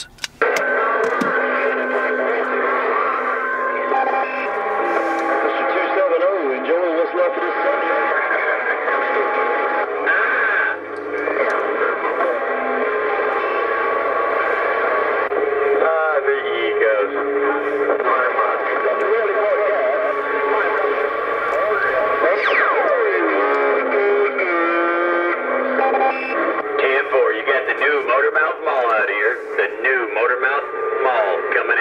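Barefoot Stryker SR955HPC CB radio's speaker playing a crowded channel: several stations talk over one another at once, tinny and garbled, with steady whistling tones mixed in and a long falling whistle about 22 seconds in.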